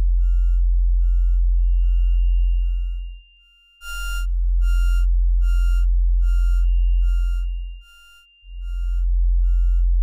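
Live-coded electronic music from TidalCycles: a very deep sine-wave synth bass note swells in, holds for about three and a half seconds and fades, returning about four seconds in and again near the end. Over it, short high square-wave synth beeps with delay echoes repeat about twice a second, the brightest about four seconds in.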